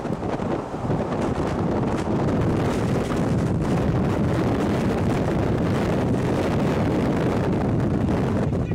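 Strong storm wind buffeting a camera microphone close to a tornado: a dense, steady rushing noise that builds over the first second or so and then holds.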